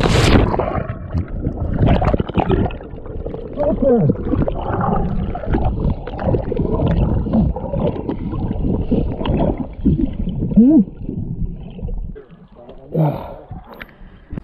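A cliff jumper hitting the sea with a sharp splash, then muffled underwater rushing, bubbling and gurgling heard through a submerged action camera, quietening after about twelve seconds.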